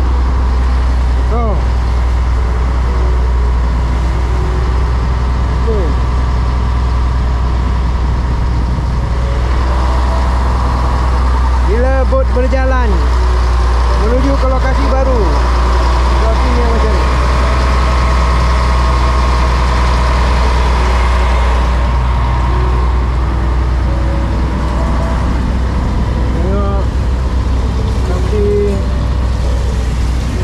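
A fishing boat's engine running steadily as the boat cruises, with water rushing past the hull. Indistinct voices come in briefly about twelve and fifteen seconds in.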